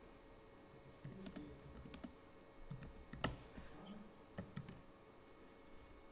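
Faint typing on a computer keyboard: scattered keystrokes, with one sharper click about three seconds in.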